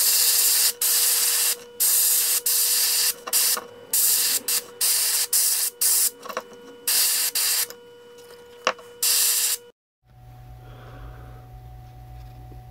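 Airbrush spraying a light coat of transparent red paint onto a wooden popper lure in repeated short hissing bursts as the trigger is pressed and released. The hissing stops about ten seconds in, leaving a low steady hum.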